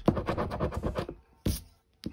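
A coin scraping the silver coating off a lottery scratch-off ticket in quick back-and-forth strokes. The strokes fade out after about a second, and one more short scrape follows about a second and a half in.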